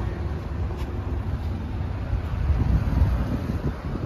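Low, uneven rumble of wind buffeting the microphone.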